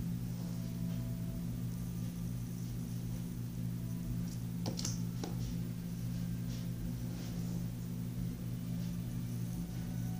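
A steady low hum, with a few faint, sharp clicks or taps about halfway through.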